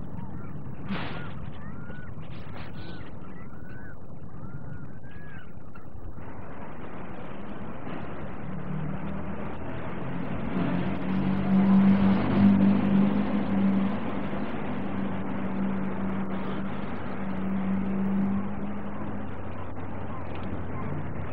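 Street traffic: a motor vehicle's engine hums steadily and swells as it passes, loudest about halfway through, then fades.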